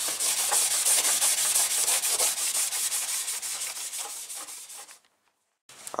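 Maroon Scotch-Brite pad (3M 07447) scuffing a painted steel door panel by hand in rapid back-and-forth strokes to key the surface for new paint. The strokes fade and cut off about five seconds in.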